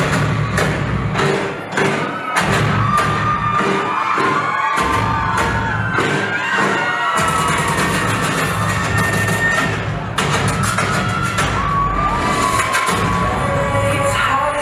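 Loud, beat-driven dance-routine music with a wavering lead melody, the bass dropping out briefly a few times, over an audience cheering and shouting.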